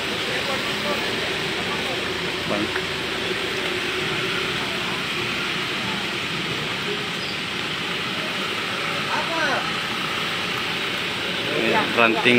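A steady hissing outdoor background noise with faint voices now and then.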